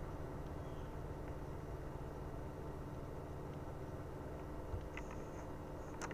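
Steady low background hum and hiss with no speech, and a few faint clicks near the end.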